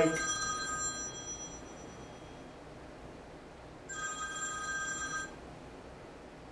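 A telephone ringing in steady electronic tones of several pitches at once. One ring fades out during the first second, and a second ring comes about four seconds in and lasts just over a second.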